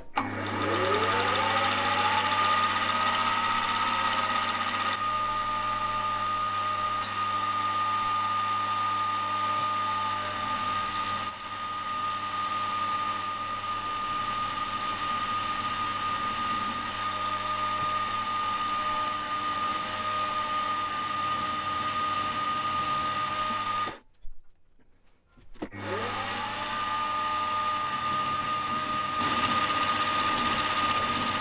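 Milling machine spindle motor spinning up with a rising whine, then running with a steady high whine while the cutter machines the piston. It stops briefly near the end and spins up again.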